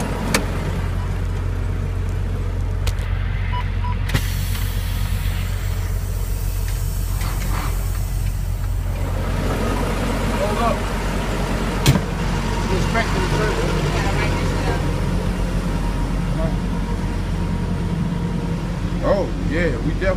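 Semi-truck diesel engine idling steadily, with a few sharp clicks over it, the loudest about twelve seconds in.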